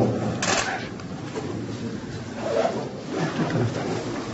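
Quiet classroom sound with a brief rustle about half a second in, then faint, low voices.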